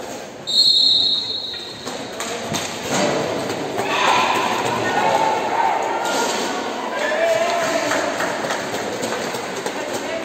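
A referee's whistle blows once, about a second long, near the start, restarting play in a roller hockey game. Then shouting voices echo through the hall, with scattered knocks of sticks and ball on the rink.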